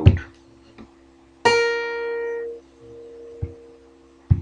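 A single plucked note on a guitar, about a second and a half in, with a fundamental around 500 Hz: bright at first, its upper overtones dying away within about a second while the fundamental rings on faintly almost to the end.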